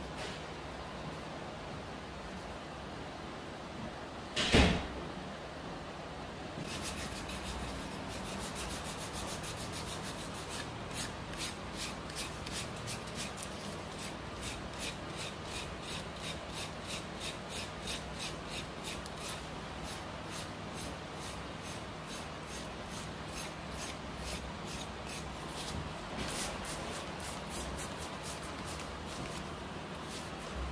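Thick, dry callus skin on a heel being scraped down in short, rhythmic strokes, about two or three a second, starting some seconds in. A single sharp knock sounds about four seconds in.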